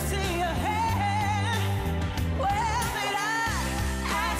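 Live singing with a pop backing track: a singer holds long, wavering notes with vibrato over a steady bass line. The bass drops out for a moment about three seconds in, then returns.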